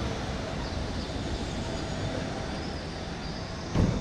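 Steady low rumble of city traffic, with a vehicle passing close by and a short, loud low thump near the end.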